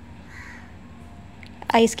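A crow caws once, faintly and briefly, about half a second in, over quiet room tone.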